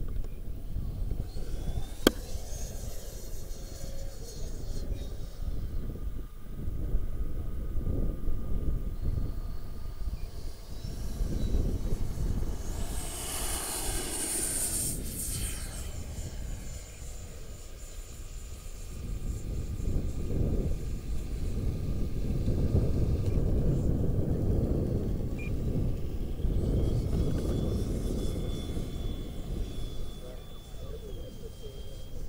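Twin 64 mm electric ducted fans of an Arrows F-15 model jet whining in flight. The high whine slides up and down in pitch and is loudest in a close pass about halfway through, over a gusty low rumble. There is a sharp click about two seconds in.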